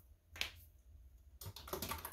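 Typing on a computer keyboard: one keystroke, then a quick run of keystrokes in the second half.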